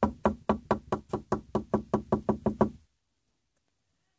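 Rapid, even knocking on a door, about five knocks a second for nearly three seconds, then it stops.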